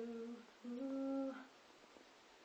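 A girl singing unaccompanied, holding one long note that stops about half a second in, then a shorter, slightly higher note that fades away at about a second and a half.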